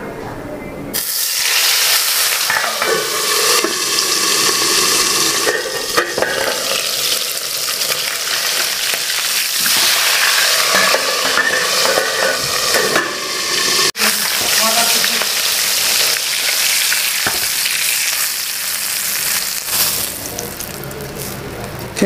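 Turmeric-rubbed chitol (clown knifefish) pieces sizzling loudly as they fry in hot oil in a wok covered with a steel plate. The sizzle starts suddenly about a second in as the fish goes into the oil and runs on steadily, with a momentary break about two-thirds of the way through.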